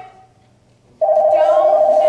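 A telephone ringing: one steady ring with a fast flutter, starting sharply about a second in and lasting about two seconds.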